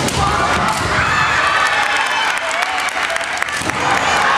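Women kendo fighters' high, drawn-out kiai shouts, with stamping footwork thuds on the wooden gym floor and sharp clacks of bamboo shinai, most of them near the start and again shortly before the end.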